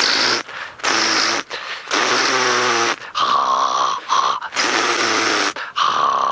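A man imitating an impala ram's rutting call: a run of about five loud, rough snorts and guttural grunting roars, close to the microphone.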